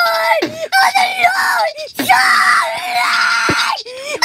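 Screamed vocals in a song: a voice yelling in short bent phrases, then holding one long scream through the second half, with little backing music audible.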